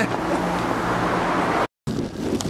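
Road traffic noise: a steady rush with a low engine hum from cars on the road. It cuts off suddenly near the end.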